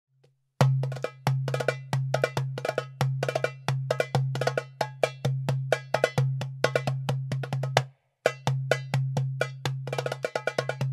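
Darbuka (goblet drum) played solo by hand: deep ringing dum strokes in the centre of the head interleaved with rapid, sharp tek and ka strokes at the rim in a fast rhythm. It starts just after the first half second and stops briefly about eight seconds in before carrying on.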